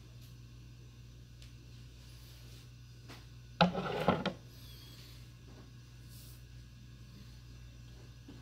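A steady low hum in a small room. About three and a half seconds in comes one short, loud bump of hands handling things on a wooden table, lasting under a second.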